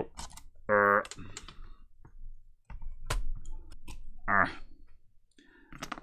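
Scattered light clicks and knocks of a laptop motherboard and its plastic chassis being handled as the board is lifted out, with two short wordless vocal sounds, one about a second in and one past the middle.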